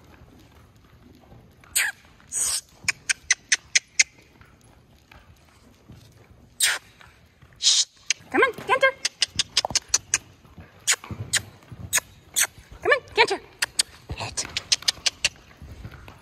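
Tongue clicks (clucking) in quick runs of sharp clicks, about five a second, urging a horse on the lunge line, with a few short rising voiced calls in between.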